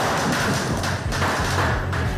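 Street sound of burning New Year's effigies: a dense crackling fire with scattered pops and thuds. It cuts off abruptly near the end.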